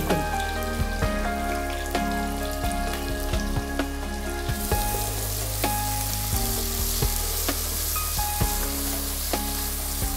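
Sliced onion, green chillies and curry leaves sizzling as they fry in hot oil in an aluminium pressure cooker, with a ladle clicking and scraping against the pot as they are stirred. The sizzle grows louder about halfway through.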